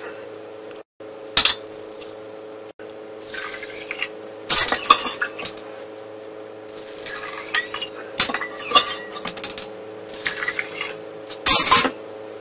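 A metal spoon clinks against a ceramic cup as raw rice is tipped in. Then water is poured into the ceramic cups in a series of splashing pours, over a steady low hum.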